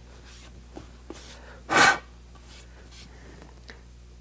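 Quiet handling of small parts and wire on a steel workbench with a few faint clicks, and one short, loud hiss a little under two seconds in.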